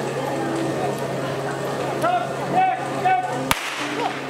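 A single sharp crack of a starting pistol about three and a half seconds in, the signal that starts a unicycle race. Short shouted calls come just before it.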